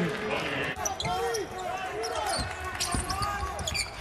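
Basketball being dribbled on a hardwood court, with a series of sharp bounces and players' voices calling out, all heard clearly with little crowd noise in a largely empty arena.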